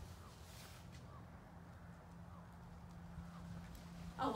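Near silence: a faint steady low hum with a few faint short chirps.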